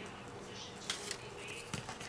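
Quiet handling of cardstock and a paper strip, with a couple of small taps or rustles about a second in and near the end.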